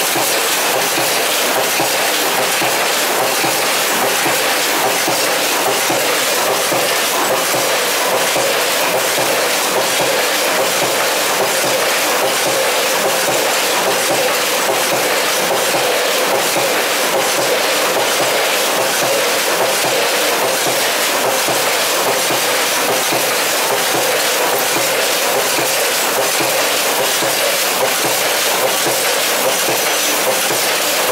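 Snack packaging line running, a vertical form-fill-seal bagging machine with a multihead weigher: a steady, loud mechanical clatter of rapid fine clicks over a hiss.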